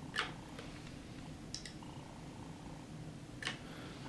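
Faint steady low hum with a few light clicks scattered through it.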